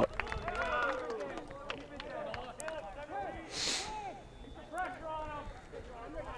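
Faint, scattered voices of people at an outdoor soccer field, with a few small clicks and a brief hiss about three and a half seconds in.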